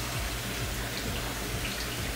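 Kitchen faucet's pull-down sprayer running a steady stream of water onto a pleated cotton air filter in a stainless steel sink, rinsing it through.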